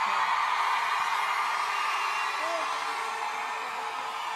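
Studio audience applauding and cheering, fading slightly toward the end.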